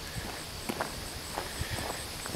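Footsteps walking across grass: a few soft, irregular thuds over a low outdoor background hiss.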